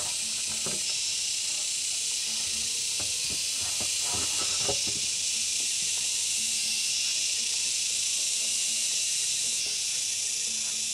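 A steady high hiss of insects buzzing in the vegetation. A few light wooden knocks and clatters come through near the start and about three to five seconds in, as a wooden beam is handled against the timber posts.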